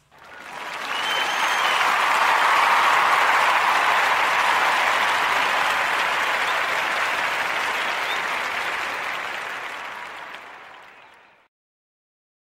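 An audience applauding, fading in at the start and fading out about eleven seconds later.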